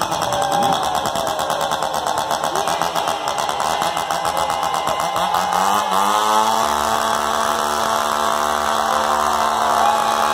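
A two-stroke chainsaw revved into the stage microphone as a solo instrument, the engine firing rapidly and wavering in pitch. About six seconds in it climbs and is held steady at high revs.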